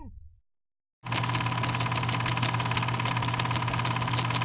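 After a sound fades out and a moment of dead silence, a machine starts running about a second in: a steady hum with a fast, irregular clatter over it.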